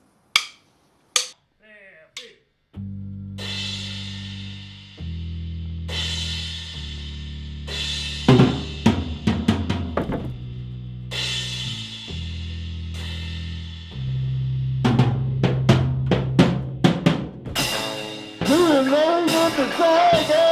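A metal band starts a song: a few drumstick clicks count it in, then long held low chords ring out with cymbal crashes over them. Drum hits come in bursts, and the playing turns into fast drumming near the end.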